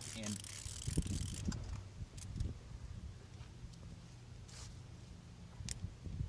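Hand ratchet with a spark plug socket clicking as a spark plug is unscrewed from the engine: a cluster of short clicks in the first couple of seconds, then only a few faint ticks.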